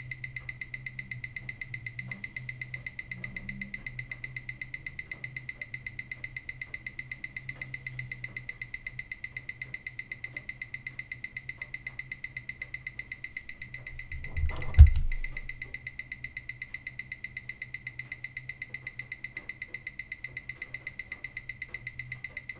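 Replica Rolex Submariner's mechanical movement ticking rapidly and evenly, picked up and amplified by a timegrapher's microphone, over a faint steady high whine. About 15 seconds in, a loud knock as the watch is handled on the microphone stand.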